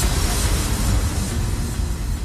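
A steady low rumble with a hiss over it, slowly thinning out, with no beat or tune.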